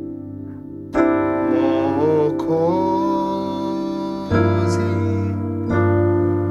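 Sustained piano chords on a keyboard. A C add9 chord with G in the bass is struck about a second in and held, then two more chords follow in the last seconds, arriving at B-flat major over G in the bass.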